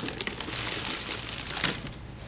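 Crushed walnut shell filling being dumped out of an overfilled fabric pincushion: a dense rattle of small hard granules with fabric rustling, dying down near the end.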